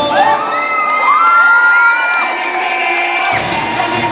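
Audience cheering, with several long, high-pitched whoops held over a stripped-down break in the dance music. The music's bass beat comes back in near the end.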